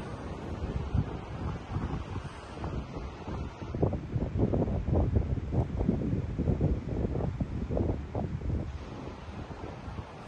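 Wind buffeting the microphone in gusts, strongest in the middle stretch, over a steady wash of ocean surf.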